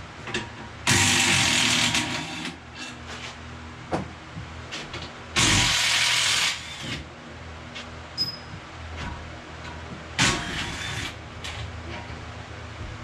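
Handheld power tool run in three short bursts of about a second each while fastening parts on an engine block on a stand, with light metallic clicks of tools between the bursts.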